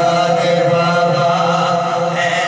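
A man's unaccompanied devotional chanting into a microphone, holding one long steady note with a slight waver.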